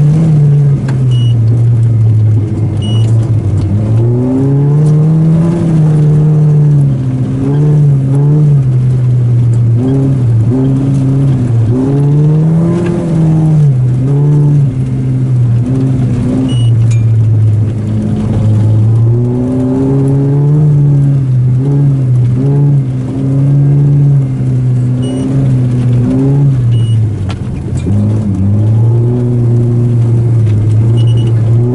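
Volkswagen Golf GTI's four-cylinder engine, heard from inside the cabin, driven hard: the revs climb and drop over and over as it accelerates, shifts gear and lifts off.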